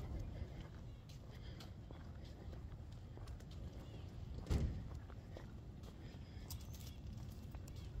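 Footsteps and handling noise from a hand-held phone while walking, over a steady low rumble, with one louder thump about four and a half seconds in.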